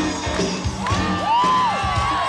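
Live rock band playing on an audience recording, with a steady beat of bass and drums. High sliding tones arch up and down over the music about a second in, with crowd whoops faint in the mix.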